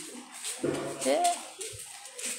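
Quiet voice sounds: a few short, soft spoken or voiced utterances in the middle, with no distinct non-speech sound.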